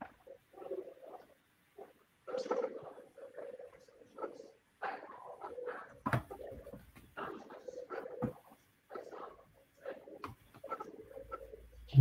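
Faint, muffled voices in short broken phrases, too low and dull to make out any words.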